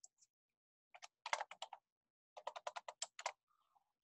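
Typing on a computer keyboard: two quick runs of keystrokes, the first about a second in and the second about two and a half seconds in.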